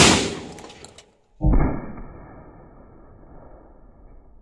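A 12-gauge Huglu GX812S shotgun fires an expanding slug: one sharp, loud shot whose echo fades over about a second. After a brief silence, a second, deeper boom comes about a second and a half in, duller in tone, with a long fading tail.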